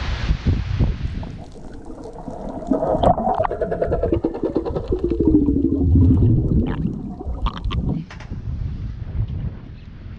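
Wind and surf briefly at the start, then muffled underwater sound: water gurgling and bubbling around the camera, with a low wavering tone that slides downward midway.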